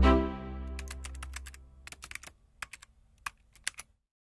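Logo sting sound effect: a deep, pitched musical swell fading out over the first second and a half, followed by an irregular run of sharp keyboard-typing clicks as the tagline types on.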